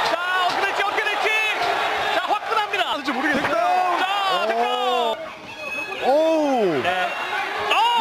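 Excited men's voices shouting and letting out long, drawn-out rising-and-falling exclamations over an MMA fight, with a few short sharp knocks mixed in.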